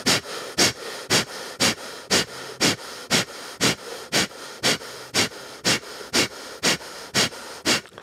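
A man's forceful rhythmic breathing for 'puffing the lungs': short sharp puffs of breath, evenly spaced at about two a second.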